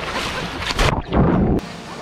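Seawater splashing and rushing over the microphone as two people wade into the sea, turning heavy and muffled about a second in, with a laugh.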